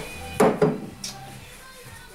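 An aluminium two-stroke cylinder is set down on a workbench with a short knock about half a second in, over faint steady background music.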